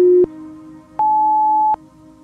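Workout interval timer counting down to zero. There is a short low beep, then about a second later a longer, higher beep that marks the end of the interval, over soft background music.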